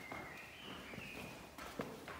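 Faint footsteps on a stone church floor, a few soft, spaced steps, with a faint thin high tone that rises slightly through the first second and a half.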